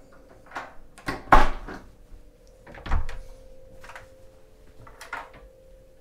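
Cabin doors being handled: a few separate latch clicks and knocks, the loudest about a second and a half in, a dull thump about three seconds in, and another click near the end.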